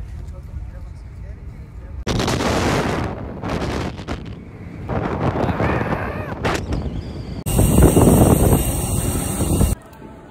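Wind buffeting and rumbling over a phone microphone while riding a quad bike (ATV), loud and gusty, changing abruptly at a couple of points and cutting off just before the end.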